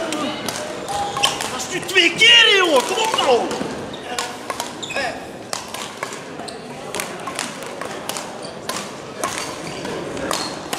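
Badminton play in a large, echoing sports hall: sharp racket-on-shuttlecock hits and footfalls on the court floor come as a string of clicks. About two seconds in there is a burst of high, sliding squeaks, typical of court shoes on the floor.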